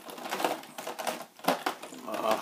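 Thin clear plastic packaging crinkling and clicking under the fingers while small plastic accessories are pushed around inside it; an irregular string of sharp clicks and crackles.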